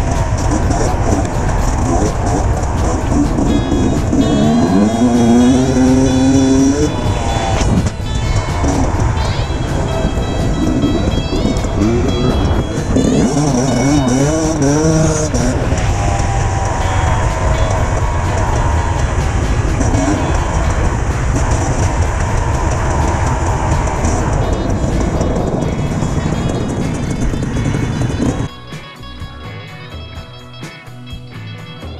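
Dirt bike engine revving up and down as the bike is ridden along the trail, heard from the rider's own camera, with music laid over it. The engine sound cuts off near the end.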